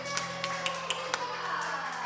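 Hands clapping: about six sharp, uneven claps over the last held notes of a children's song.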